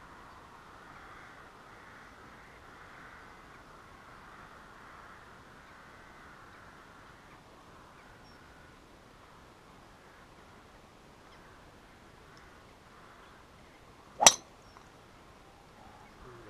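Golf driver striking a ball off the tee: a single sharp crack about 14 seconds in, far louder than the faint background before it.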